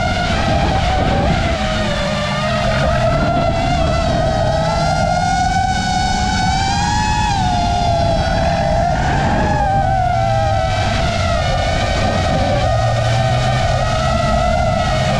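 Racing-drone motors and propellers whining in a high, wavering tone that glides up and down with the throttle, rising for a couple of seconds near the middle. Beneath it a car engine runs at a lower pitch.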